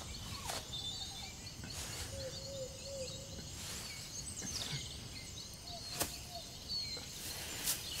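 Faint woodland ambience: scattered bird chirps over a low steady hiss. A few soft clicks come in the second half.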